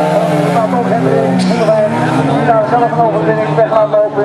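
Autocross car engines running at a steady pitch, with a commentator talking over the public-address system, most clearly in the second half.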